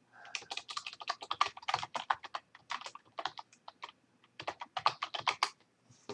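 Typing on a computer keyboard: a run of quick, irregular keystrokes with a short pause a little after the middle, then more keystrokes.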